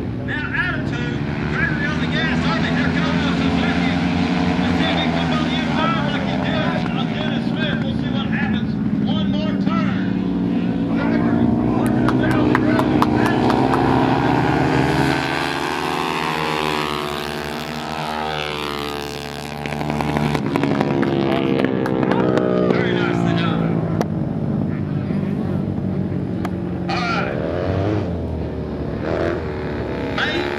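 Dirt-track racing motorcycles running hard, the engine pitch rising and falling as the riders go through the turns. One bike passes close about halfway through, where the engine is loudest.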